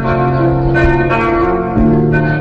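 Live rock band music with held, sustained chords. The chord changes near the end.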